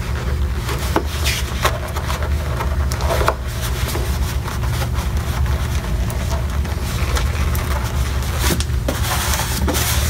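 Latex modelling balloons being handled and pushed through one another by gloved hands: scattered short rubbing squeaks and clicks, most of them near the start and near the end, over a steady low background hum.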